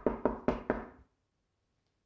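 A fist knocking on a closed interior door: a quick run of four knocks in about the first second.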